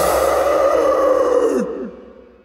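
A man's long held scream closing a heavy-metal song, the final note sustained over the music's ringing tail. About a second and a half in, the voice drops sharply in pitch and the sound fades away.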